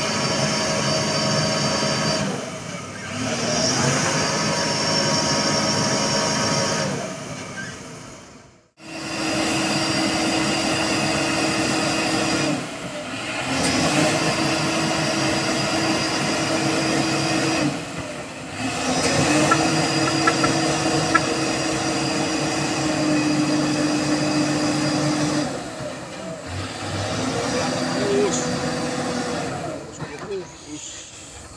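Diesel engine of a heavily loaded Mitsubishi Fuso 6x4 truck revved hard and held at high revs in several long pushes, each rising at its start and easing off after a few seconds, as its drive wheels spin in the mud: the truck is stuck on the climb.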